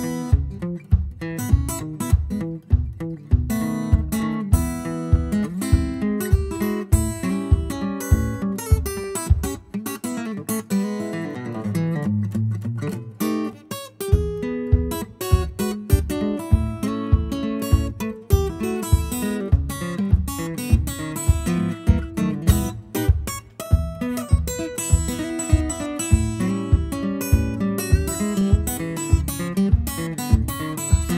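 Solo acoustic guitar played fingerstyle: a steady bass beat under a picked melody, with the bass dropping out for a few seconds near the middle.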